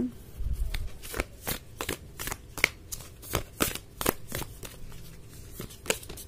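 An oracle card deck being shuffled by hand: a series of light card slaps and clicks, about two or three a second.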